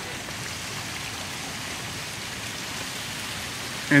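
Steady rush of moving water in a sea lion pool, an even hiss with no breaks.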